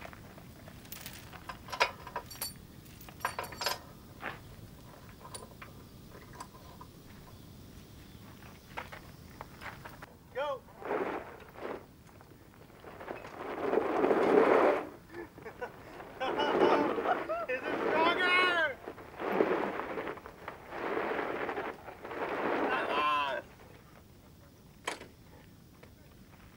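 A steel tow chain clinking and knocking as it is hooked up. From about ten seconds in, two golf carts strain against each other on the chain, with a series of loud bursts of tyres spinning on gravel and voices shouting.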